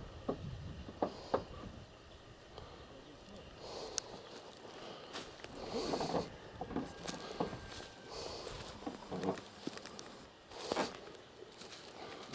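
Footsteps swishing through grass, soft and irregular, about one step a second. A few sharp clicks come in the first four seconds.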